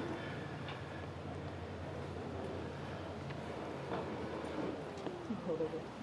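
Faint knocks and handling noise as a western saddle is lifted off the arena dirt, over a steady low hum, with a brief low voice near the end.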